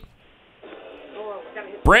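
An open telephone line on air: low line hiss cut off to a phone's narrow range, with a faint, thin voice on it from about half a second in. A loud nearby man's voice breaks in just at the end.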